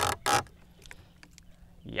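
A man's laugh trailing off, then a second or so of faint scattered small clicks, then a sharp pained "yowch" near the end.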